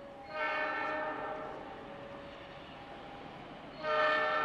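Diesel locomotive horn of an approaching train, a CC206, sounding at a distance: a chord of several steady notes that comes in a fraction of a second in and fades away over about two seconds, then a second blast starting just before the end.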